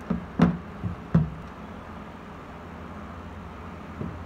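A few hollow knocks of the white plastic body of an electric kettle being handled and turned over, the sharpest about half a second in and another just after a second, followed by quiet handling.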